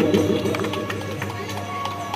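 A small seated audience clapping, the scattered claps thinning out, over faint background music; an amplified voice trails off at the start.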